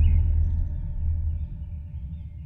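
A deep, rumbling drone from a dramatic background score, slowly fading, with faint held tones above it.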